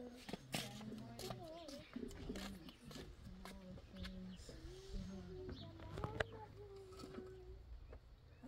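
Faint voices talking, with a few sharp knocks of concrete blocks being set onto a block wall, the loudest about six seconds in.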